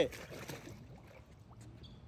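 Pool water sloshing softly as a person sinks under the surface through an inflatable swim ring. It fades to faint lapping within about a second.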